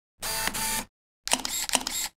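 Camera sound effect in the logo sting: a short whirring burst, then a quick run of sharp shutter clicks starting about a second in.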